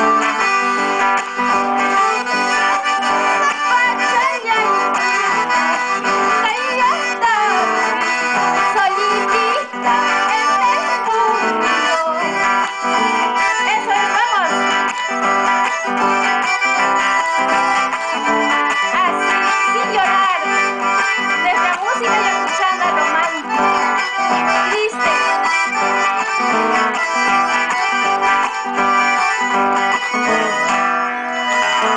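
Accordion and acoustic guitar playing together in a steady rhythm, an instrumental passage without singing.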